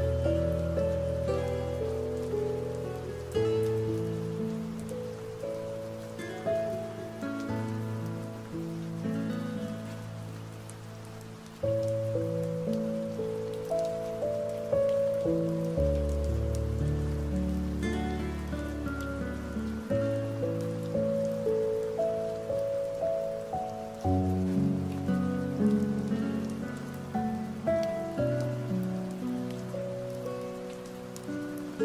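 Slow, soft instrumental sleep music, with long held low notes under a gentle melody, layered over the sound of steady rain. The music dips quieter a little before the middle and starts a new phrase just after.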